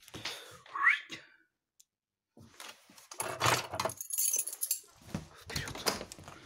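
A short rising squeal about a second in, then, after a brief gap, a run of rustling and knocking handling noises.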